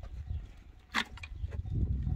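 A single sharp click of the removed plastic van tail-light unit being handled, about halfway through, over a low steady rumble.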